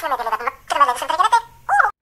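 A child's voice making drawn-out, pitch-bending sounds without recognisable words, in several short runs with a brief pause near the end.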